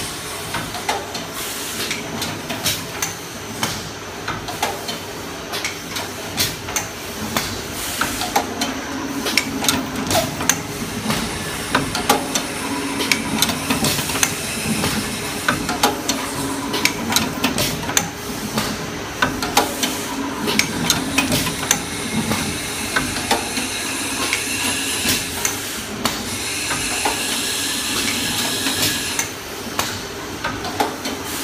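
Paper baking-cup forming machine running: a rapid, irregular run of sharp metallic clicks and knocks from its forming mechanism over a steady mechanical hum and a hiss. A thin high whine joins near the end.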